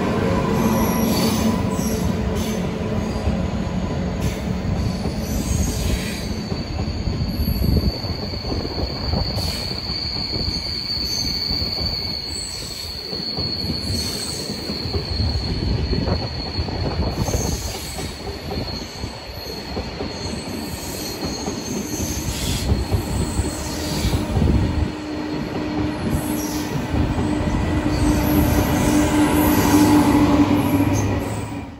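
Eurostar Class 373 high-speed train running slowly past, its coaches rumbling over the track with a thin, high, steady wheel squeal through the middle and occasional clicks over the rails. A lower steady hum comes in near the end as the rear power car draws level.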